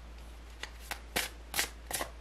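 A tarot deck being shuffled by hand: about five quick, papery card strokes, roughly three a second.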